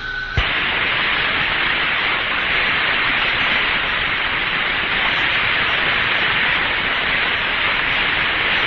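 Radio static on the Friendship 7 Mercury capsule's air-to-ground voice channel: a steady hiss with no answer coming back. It opens with a brief steady tone that ends in a click about half a second in, after which the hiss holds level.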